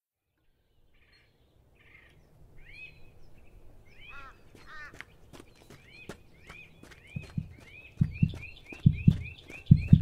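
A bird chirping a repeated rising-and-falling note after a short silence, the chirps coming faster toward the end. From about seven seconds in, low double thumps in a heartbeat rhythm join it, about one pair a second, growing louder.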